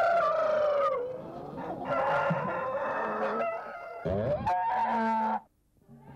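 Rooster crowing, three long crows one after another, cutting off abruptly near the end.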